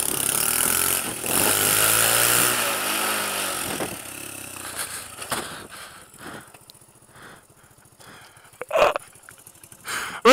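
Honda C90's 90cc single-cylinder four-stroke engine pulling two riders, its pitch rising and falling under wind rush on the microphone. After about four seconds it drops to a slow, even putter at low revs. A short, loud sound comes near the end.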